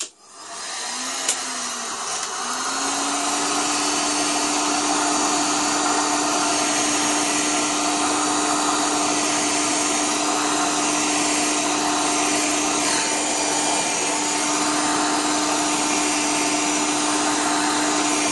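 Heat gun switched on, its fan building up over the first couple of seconds and then blowing steadily with a steady motor hum, shrinking thin black heat-shrink tubing onto a headphone cable.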